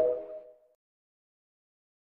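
The last notes of the TikTok end-card jingle ring and fade out, giving way to complete silence about half a second in.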